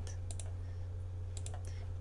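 A few computer mouse clicks, some in quick pairs, over a steady low electrical hum.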